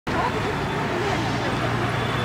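Street ambience: road traffic running steadily under a low hum, with indistinct voices in the background.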